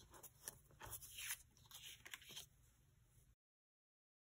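X-Acto craft knife drawn through card stock on a cutting mat: a few short, scratchy cutting strokes in the first two and a half seconds. Near the end the sound cuts out completely.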